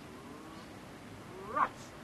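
Faint children's voices, then one short, loud shout that rises and falls about one and a half seconds in.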